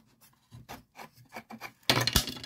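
Pieces of a wooden pipe rack being handled and shifted by hand: a series of light wooden rubs and clicks, then a louder clack near the end.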